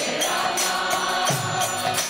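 Kirtan: a group chanting a mantra together over a harmonium, with hand cymbals keeping a steady beat of about three strokes a second.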